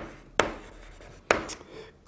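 Chalk writing on a blackboard: a few sharp taps of the chalk striking the board, with faint scratching strokes between them.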